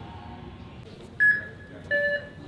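Two electronic beeps over steady airport terminal background noise: the first a single clear tone about a second in, the second shorter and carrying an added lower tone.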